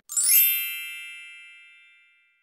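A single bright chime, struck once and ringing out, fading away over about two seconds. It is a sound effect added in the edit at a cut to a title card.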